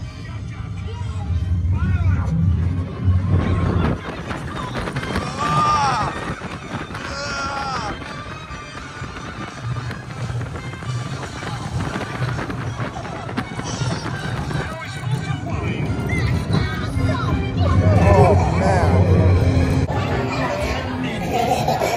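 Incredicoaster roller coaster train running along its steel track with a steady low rumble and rush of air, while riders yell and whoop, loudest a few seconds in and again near the end.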